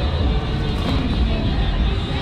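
A pickup truck's engine and tyres as it pulls away from the kerb close by, a loud, steady low sound.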